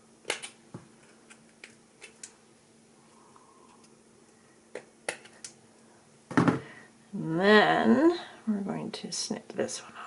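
Small sharp clicks of pliers and wire cutters working the ends of a wire ornament, a few scattered over the first half and a louder rattle about six seconds in. A short wordless vocal sound follows about seven seconds in.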